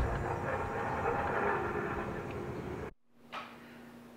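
A steady, droning machine noise with several held pitches, which she calls an awful sound, too loud to keep talking over. About three seconds in it cuts off abruptly, leaving faint room tone with a low hum.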